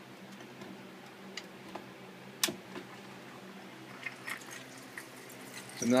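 Small electric water pump humming steadily as it feeds a tiered barley-fodder watering system, with scattered small drips and clicks of water on the trays and one sharper click about halfway through.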